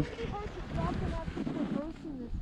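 Wind rumbling on the microphone on an open ski slope, with a few faint, brief snatches of distant voices.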